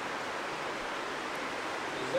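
Steady, even hiss of background room noise picked up by the recording.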